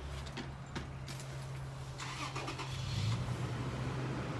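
A car engine running nearby, a steady low hum, with knocks and rustling from the phone being handled.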